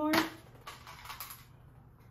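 Small items being picked up and moved about on a wooden desk: a sharp click near the start, then a few faint light knocks and clicks.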